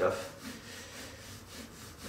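Faint scratching of a Polychromos coloured pencil on paper, in quick repeated shading strokes.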